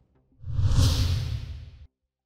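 A whoosh sound effect for a logo transition: a rushing swell that starts about half a second in, peaks quickly, fades over about a second and then cuts off abruptly.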